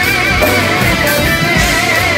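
Live funk band playing: electric guitars over bass guitar and drums, with a lead line holding long, wavering notes.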